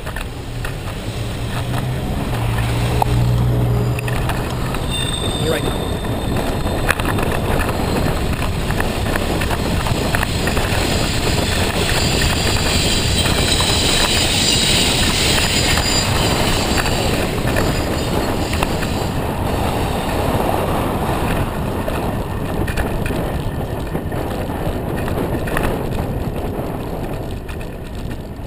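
Wind rushing over the microphone of a camera on a moving bicycle, mixed with road and tyre noise and passing city traffic; a vehicle engine hums close by in the first few seconds.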